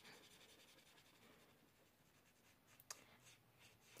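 Faint, near-silent rubbing of an alcohol marker's tip stroking across paper as an area is coloured in, with one small click about three seconds in.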